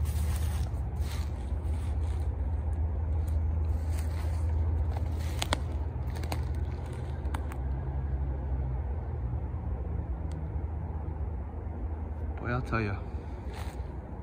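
Footsteps through woodland undergrowth, with scattered cracks and crackles of twigs and dry leaves, over a steady low rumble. A brief pitched sound comes near the end.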